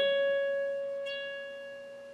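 Electric guitar playing a single note on the B string at the 14th fret (C sharp), picked once and left to ring, fading slowly.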